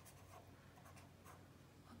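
Faint, short strokes of a felt-tip marker writing numerals on notebook paper.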